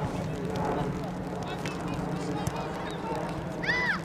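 Children calling out on a football pitch, mostly faint. Near the end comes one sharp, very high-pitched shout that rises and falls. A steady low hum runs underneath.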